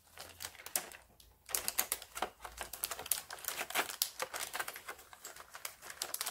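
Clear plastic packaging crackling and clicking in irregular small bursts as it is handled, with a short lull about a second in.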